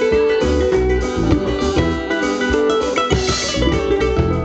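Live West African band music: bright plucked kora and electric guitar lines over bass guitar and a drum kit.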